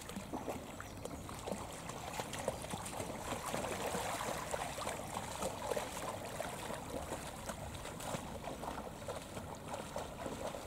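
Shallow sea water splashing and lapping as a dog wades through it, a steady run of small, quick splashes.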